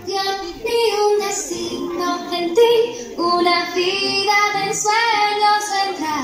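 Song with high singing voices carrying a melody over very little bass, the low end of the music dropping out as the passage begins.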